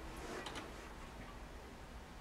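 A quiet stretch with two faint clicks in the first half second over a low hum.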